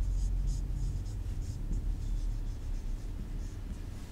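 Marker pen writing on a whiteboard: a quick run of short strokes as the words are written, over a steady low hum.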